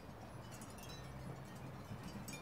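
Faint background ambience with a few short, faint high notes scattered through it.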